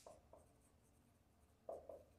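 Faint, brief squeaks of a marker writing on a whiteboard, a few short strokes with near silence between them.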